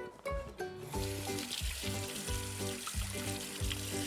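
Kitchen tap running into the sink while hands are washed under it, the water starting about a second in. Background music plays along with it.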